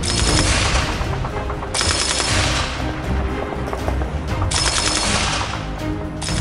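MG 34 machine gun firing 7.92×57mm Mauser in three rapid bursts of a second or so each: one at the start, one about two seconds in and one about four and a half seconds in. Background music plays underneath.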